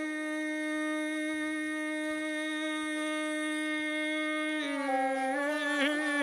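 Rababa, the single-string Bedouin spike fiddle, bowed: it holds one long, steady nasal note, then steps down about four and a half seconds in and moves into an ornamented phrase with a wavering pitch.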